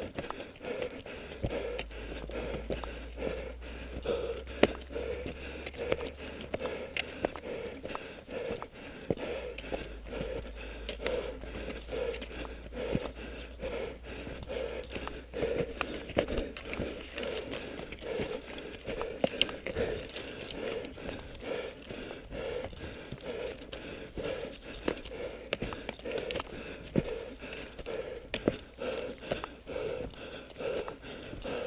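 Cross-country skis and poles working on a snowy trail in a steady stride rhythm, about one and a half strokes a second, with many sharp clicks along the way.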